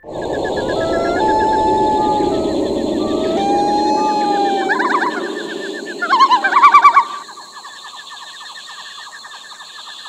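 Night-time ambience laid into a TV drama: fast, even insect-like chirping throughout, with a rumbling background and held, gliding tones over the first seven seconds. A loud warbling bird cry comes about six seconds in and lasts about a second. After that, the chirping carries on over a quieter background.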